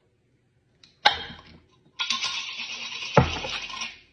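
Glass mason jars and plastic straws being handled: a sharp clink about a second in, then about two seconds of steady hissy rustling with a hard knock partway through.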